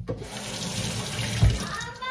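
Kitchen tap running into a stainless-steel sink as strawberries are rinsed under the stream, water splashing steadily over the hands and fruit. A low thump comes about a second and a half in.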